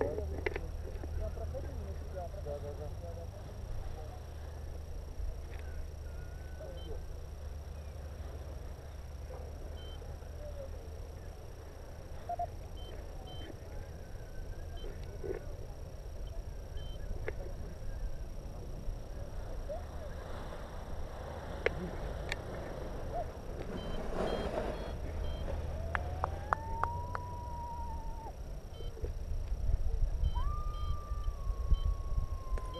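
Quiet open-air ambience: a steady low rumble of wind on the microphone, with faint scattered distant calls and one rising-then-falling call near the end.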